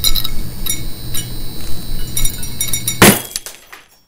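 Sound effect of a neon sign: an electric buzz with crackling clicks, then a sharp crash of breaking glass about three seconds in, dying away in a few crackles as the sign goes dark.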